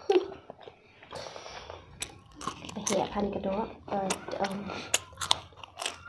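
People chewing food close to a clip-on microphone, with many sharp mouth clicks. A voice makes a few short hums in the middle.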